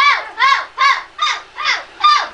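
A loud run of chicken-like squawks, about five in two seconds, each one rising and then falling in pitch.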